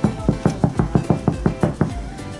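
A fist knocking on a cabin door in a rapid series of about a dozen knocks, roughly six a second, as someone locked out of the room knocks to be let in.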